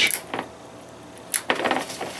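Glass bottle and glassware handled on a bar counter: a few sharp clinks and taps, with a quiet stretch between them.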